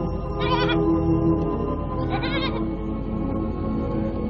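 A goat bleating twice, short quavering calls about half a second in and again about two seconds in, over sustained background music with long held tones.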